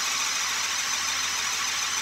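A motor-driven LEGO pneumatic pump running steadily, building air pressure for the model's pneumatic cylinders.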